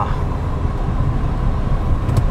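Fiat Stilo Abarth's five-cylinder engine and road noise heard from inside the cabin as the car pulls away: a steady low rumble.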